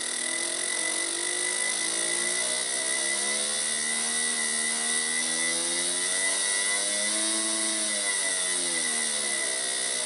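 Low-impedance fuel injector on a test bench, pulsed by a function generator through a VersaFueler injector driver, buzzing at its firing rate. The buzz rises in pitch as the simulated engine speed is turned up, peaks about seven and a half seconds in, then falls near the end.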